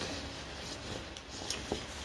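Fabric rustling as a large printed cloth tapestry is unfolded and handled, with two short clicks about a second and a half in.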